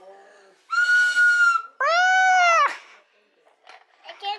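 A young child's two drawn-out squeals: the first high and held at one pitch, the second lower, arching and dropping off at the end.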